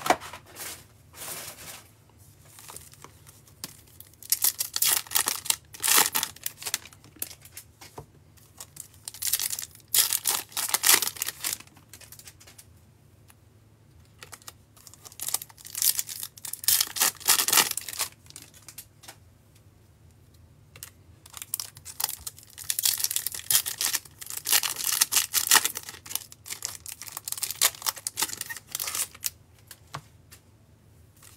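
Foil wrappers of Topps baseball card packs being torn open and crinkled by hand. The sound comes in several bouts of a few seconds each, with quieter pauses between.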